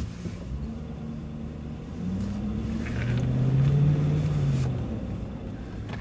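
Car engine and road rumble heard from inside the cabin as the car drives on. The engine note rises after about two seconds, is loudest around four seconds in, then eases off.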